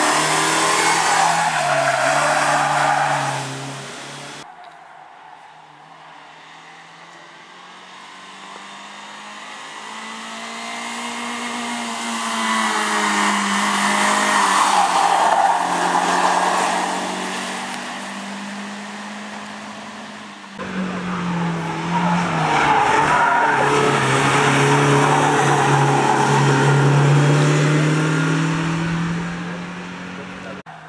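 Nissan Micra rally car's four-cylinder engine revving hard as the car drives past at racing speed, heard in three separate passes. The first is loud and breaks off after about four seconds. The second approaches from far off, swells to a peak midway and fades, and the third is loud again through most of the last third, with the engine note climbing and dropping through the gears.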